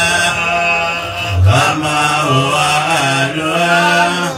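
Voices chanting a devotional song in long, melodic held notes over a steady low sustained tone.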